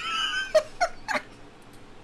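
A man laughing: a high, wavering giggle, then three short laugh bursts that die away a little past a second in.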